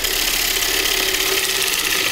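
A turning tool cutting into a spinning basswood bowl blank on a wood lathe, trimming away the bark: a steady cutting noise of shavings being peeled off, with the lathe's hum under it.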